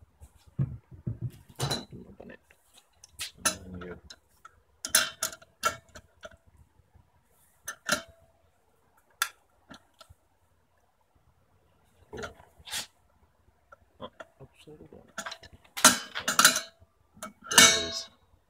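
Adjustable steel wrench clinking and knocking against the brass fittings of a hydrogen cylinder valve as the fill adapter is loosened: scattered sharp metallic clicks, with two louder, longer noises near the end.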